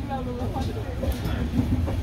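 LHB passenger coach running on the track: a steady low rumble of wheels on rail with a couple of sharp clacks, and people's voices over it.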